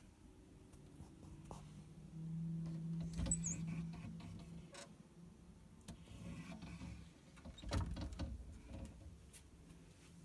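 Wooden cupboard doors being opened and handled. There is a short high squeak with knocks about three seconds in, and more knocks and a rattle near eight seconds, over a low steady hum.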